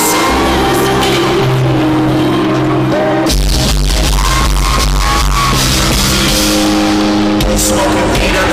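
Loud live concert music over a PA system: held chords, with a heavy deep bass coming in about three seconds in.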